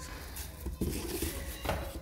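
Plastic vacuum cleaner parts being handled and lifted out of a cardboard box, with a few light knocks.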